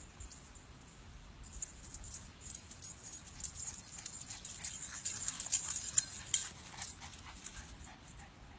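Dog tags on a Boston Terrier puppy's collar jingling as she runs back across the grass. The rapid metallic jingling grows louder from about two seconds in, is loudest a second or two before the end, then eases.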